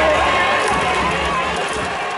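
Baseball stadium crowd in the stands cheering, with individual voices calling out over the din. The sound gradually fades down toward the end.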